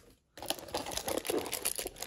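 Foil booster packs crinkling and clicking against each other as a bunch is handled and lifted out of a cardboard box. It begins a moment after dead silence.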